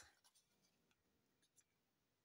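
Near silence, with a few faint clicks from card being handled.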